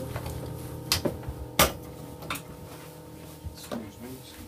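Handling noise in a small room: a few scattered sharp knocks and clicks, the loudest about a second and a half in, over a faint steady hum.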